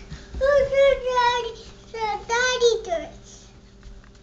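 A toddler vocalizing in a high, sing-song voice without words: a long drawn-out note with small pitch steps, then two or three shorter notes, the last one falling, ending about three seconds in.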